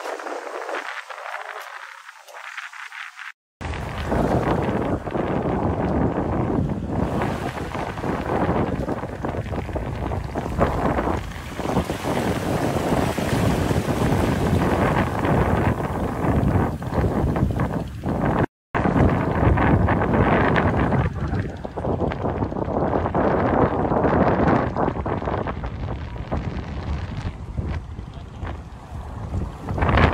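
Wind buffeting a phone microphone over the sea, with water sloshing around people wading in it. The sound drops out completely twice, for a moment each time, about three and a half and eighteen and a half seconds in.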